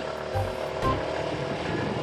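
Motor scooter engine running steadily as it pulls away down the road.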